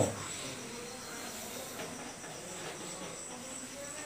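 Chalk scratching faintly on a blackboard as a word is written, over a steady low hiss with a thin, high, constant whine.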